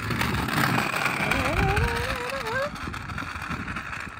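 A child's kick scooter rolling down a rough concrete ramp and onto tarmac, its small wheels giving a steady rolling noise that is loudest in the first two and a half seconds. About a second in, a voice gives one long wavering call that rises in pitch.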